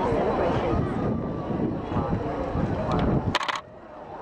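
People talking close by, then a quick run of sharp clicks near the end.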